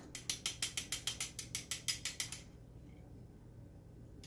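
Rapid, even metallic clicking, about six or seven clicks a second, fading out about two and a half seconds in: metal tongs tapping against a wire spider strainer.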